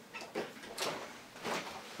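A few light clicks and knocks with faint rustling as a person shifts forward in a manual wheelchair, a foot coming off the footplate as he gets down onto the floor.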